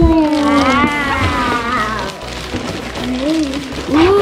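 A girl's high voice making drawn-out wordless exclamations, one long gliding "ooh" in the first two seconds and a shorter one near the end, over background music.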